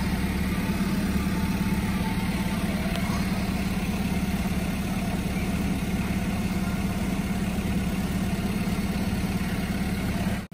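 Isuzu recovery truck's diesel engine idling steadily, a low even hum.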